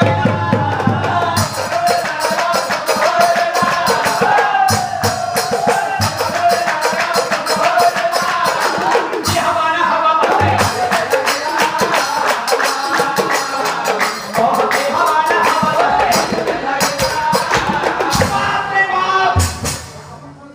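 Nagara naam: devotional singing with a melodic vocal line over nagara kettledrums and jingling hand cymbals (taal) struck in a fast, dense beat. The music breaks off just before the end.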